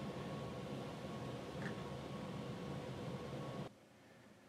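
Steady room noise: an even hiss with a faint hum, which drops away abruptly near the end.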